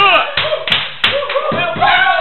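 Steady rhythmic hand clapping, about three claps a second, with several voices chanting over it.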